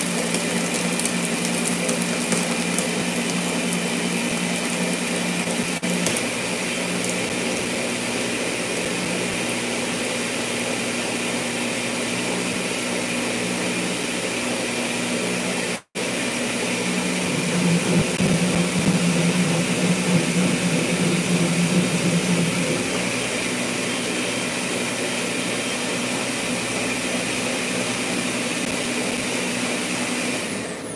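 Countertop blender running at speed, whirring steadily as it blends a thick sea moss drink with added water and ice to thin it. The sound breaks off for an instant about halfway through, then runs louder for several seconds before settling back.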